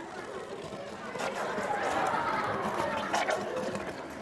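Lecture-hall audience chattering, the hubbub growing louder from about a second in until near the end, with a few faint clicks.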